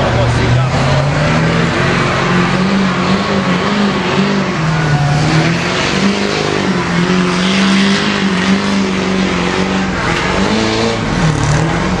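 Diesel pickup's engine labouring at high revs while it drags a weight-transfer sled down a pulling track. The pitch wavers up and down without letting off.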